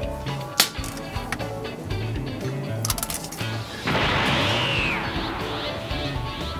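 Background music with a steady bass line and a few sharp clicks. About four seconds in, a loud rushing burst with a falling whistle, a power-up sound effect, lasts for about two seconds.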